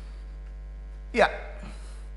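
Steady low electrical mains hum, unchanging throughout, with one short spoken word about a second in.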